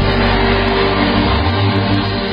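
Music with sustained, held chords over a deep bass.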